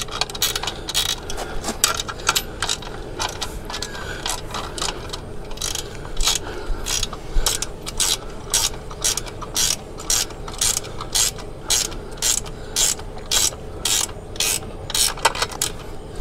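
Ratchet wrench clicking in repeated strokes as a 14 mm self-locking nut is snugged onto a steel kayak-rack pivot bolt, about two or three clicks a second.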